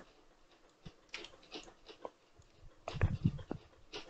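Faint scattered clicks of a computer keyboard and mouse, with a short cluster of louder knocks about three seconds in.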